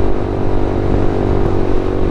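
Motorcycle engine running at a steady cruise speed, a constant drone with wind and road noise over it.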